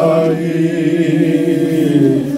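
Unaccompanied hymn singing, with long notes held steady and a step in pitch near the start.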